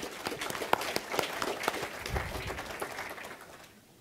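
Audience applauding in a hall, a dense patter of claps that thins out and fades away toward the end. A low bump sounds about two seconds in.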